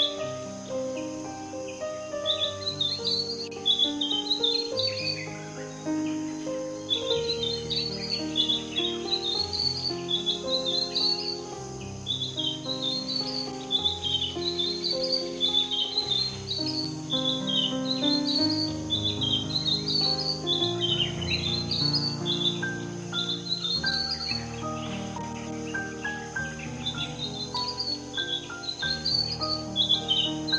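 A robin singing short, rapid chirping phrases that rise in pitch and repeat every second or so, over soft background music.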